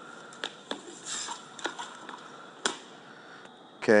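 Faint shoe scuffs and knocks on a shot put throwing circle during a throw: a few separate knocks in the first two seconds, with one sharper knock about two and a half seconds in.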